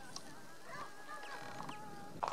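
Faint bird calls: a few thin, wavering tones over quiet outdoor background.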